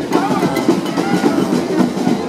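New Orleans second-line brass band playing, with low brass, horns and drums driving a steady beat, and voices from the crowd mixed in.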